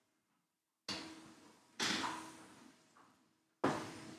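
Three short knocks about a second apart, each starting sharply and trailing off with a fading echo, with near silence before the first.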